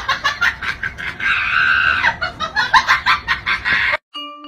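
Dog's squeaky toy being chewed: a fast run of short squeaks, with one long squeal lasting nearly a second starting about a second in.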